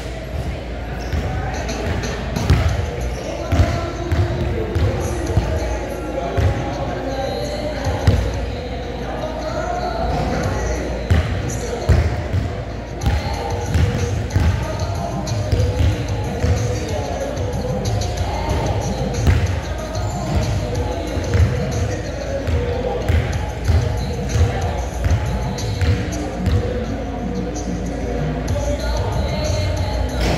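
A basketball bouncing on a court, many irregular thuds, over a steady background of indistinct voices and music.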